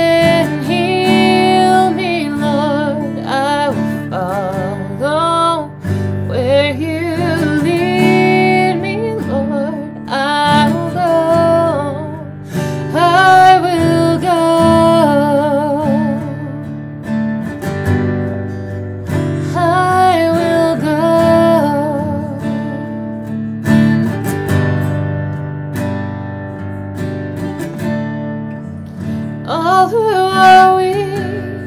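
A woman singing a worship song while strumming an acoustic guitar. The singing comes in short phrases and stops for several seconds near the end while the guitar plays on, then comes back in.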